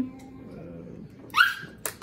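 A single short, high yelp rising in pitch about one and a half seconds in, followed shortly by a sharp click.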